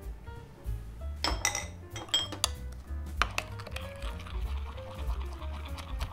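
Metal spoon clinking against a glass bowl: a few sharp clinks, then quick repeated clinking from about four seconds in as the soy-based sauce is stirred. Soft background music plays throughout.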